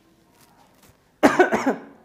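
A man coughs once, a short loud cough a little over a second in, after a quiet moment.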